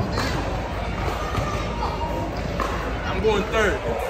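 Background voices of children and other people calling and chattering, over a steady low rumble.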